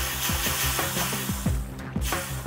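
Background music with a steady beat under a long hissing whoosh of spray, a cartoon orca blowing from its blowhole; the hiss fades near the end.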